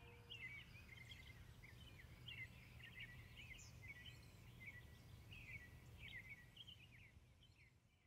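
Faint birds chirping in quick, scattered calls over a low, steady outdoor rumble; it all fades out near the end.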